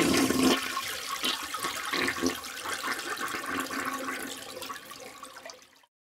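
Toilet flushing: a rush of water, loudest at first, then draining away and fading, cut off to silence shortly before the end.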